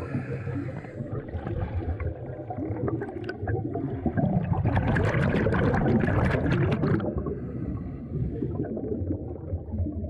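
Scuba diver breathing through a regulator, heard underwater through the camera housing: a low rumble with a burst of exhaled bubbles gurgling and crackling from about four to seven seconds in.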